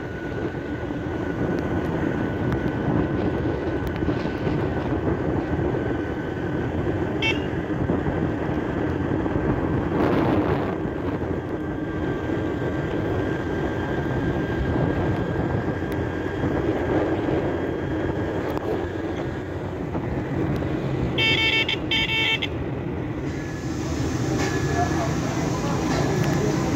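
Steady engine, road and wind noise of a small motor vehicle riding along a road. Near the end a vehicle horn gives a quick run of short beeps.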